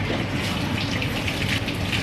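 Water running and splashing steadily as people rinse mud off, pouring it over themselves with a tabo, a plastic dipper, from buckets.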